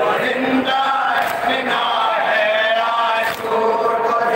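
Male voices chanting a Shia noha, an Urdu mourning lament, in a slow melodic line with a long held, wavering note in the middle.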